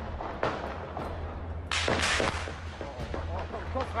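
Gunshots echoing between city buildings, picked up from an upper window: one shot about half a second in, then three in quick succession about two seconds in, each trailing off in reverberation. A man starts shouting a warning at the very end.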